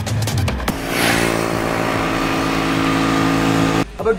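Ducati XDiavel's 1262 cc V-twin engine running at steady revs, one even note that holds without rising or falling and then cuts off abruptly just before the end. Background music with a beat is heard for the first half-second or so.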